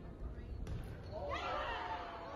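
Faint playback of an indoor volleyball rally in a gym: a sharp smack of the ball a little over half a second in, then overlapping calls from players, or sneaker squeaks, in the hall.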